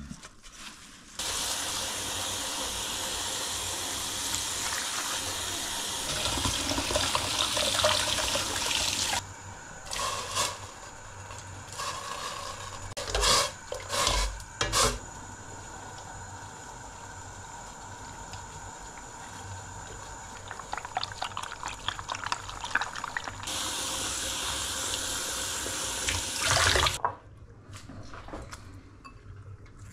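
Tap water running steadily into a metal pot as leafy greens are washed by hand; it stops, and after a stretch of a few sharp knocks and clatter of pot and metal spoon it runs again for a few seconds near the end.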